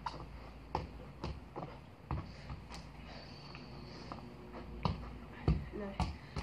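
Irregular knocks and thuds of crutches and feet on artificial grass while a football is kicked about, about eight sharp hits in all, the loudest near the end.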